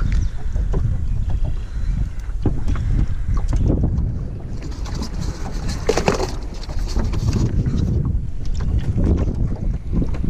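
Wind buffeting the microphone with a steady low rumble, over scattered knocks and handling noise in a small aluminium boat. About six seconds in there is a short, louder clatter at a lidded bucket in the boat.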